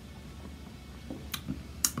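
A person drinking beer from a glass: quiet sipping and swallowing over a low steady room hum, with two sharp clicks about half a second apart near the end.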